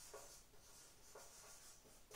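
Faint squeak and scrape of a marker pen writing on a whiteboard, in short strokes about a second apart.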